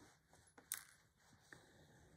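Near silence with faint handling sounds of hand sewing: a needle and thread drawn through cotton fabric, with a light sharp click about a third of the way in and a smaller one later.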